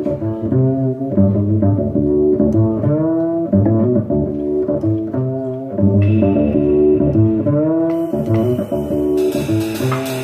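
Live jazz from an archtop electric guitar playing chords over a plucked double bass, with drums and cymbals coming in near the end.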